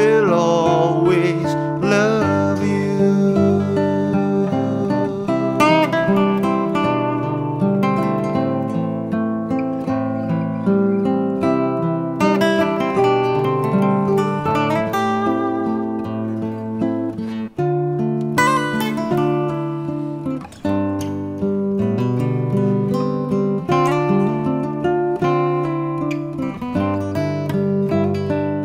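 Instrumental break of a folk song on acoustic guitar: a strummed chord rhythm with a plucked lead guitar line over it.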